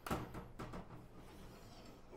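Glass door of a vintage Frigidaire Custom Imperial oven being opened: a sharp metallic click at the start, then a few lighter clicks and rattles over the next second as the door moves.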